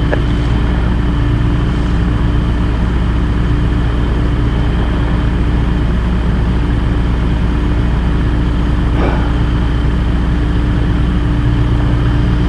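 Light amphibious aircraft's engine running steadily at low power as the plane taxis slowly on the water, off the step in displacement mode.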